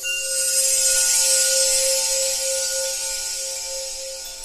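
Logo sting sound effect: a bright, airy shimmer that swells in at the start and slowly fades, over a steady held musical tone.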